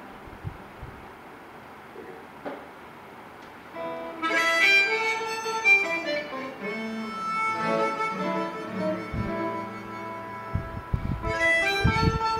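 Harmonica playing the song's instrumental introduction in held, reedy notes. It comes in about four seconds in after a quiet stretch. Acoustic guitar strums join near the end.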